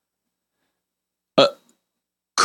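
Silence, broken once about a second and a half in by a single brief, clipped sound from a person's mouth.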